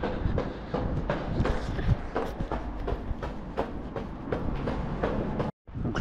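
Running footsteps on a paved path, about three strides a second, over a steady low rumble of wind and handling on a handheld camera. The sound cuts out completely for a moment near the end.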